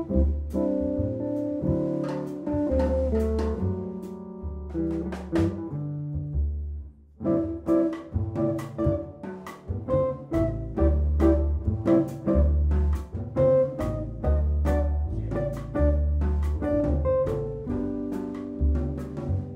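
Jazz trio playing: electric guitar lines over a plucked upright double bass, with drums and cymbal strikes. The band almost stops about seven seconds in, then comes back in.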